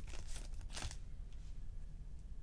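Faint rustle of a stack of baseball trading cards being slid and flipped through by hand, with a couple of soft card ticks.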